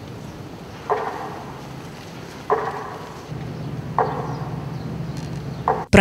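Four slow, evenly spaced strokes about a second and a half apart, each fading quickly, over a faint low hum: a beat marking a minute of silence.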